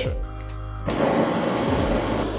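Gas torch flames hissing steadily, the hiss coming in about a second in, over background music.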